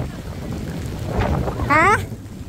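Heavy typhoon rain with gusting wind, the wind buffeting the microphone as a steady low rumble. Near the end a woman says a short, rising "Ha?".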